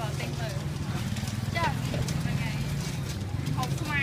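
People talking at a market fish stall over a steady low rumble.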